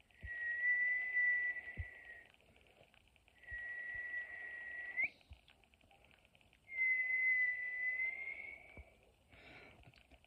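Whistling: three long, steady whistled notes at about the same high pitch, each lasting about two seconds with short silences between. The second note ends with a quick upward slide.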